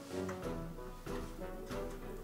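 Soft background music of held notes with no speech over it.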